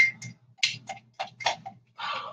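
A plastic bag crinkling as vanilla sugar is squeezed and shaken out of it into a bowl of brown sugar: a run of short, crisp crackles, about seven in two seconds.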